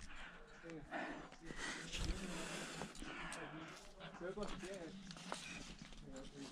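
Quiet: faint voices in the distance, with a few light scuffs and taps of a climber's hands on the rock.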